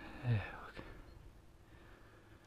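A brief breathy vocal sound close to the microphone, a short exhale or murmured syllable, about a quarter second in, followed by a single light click.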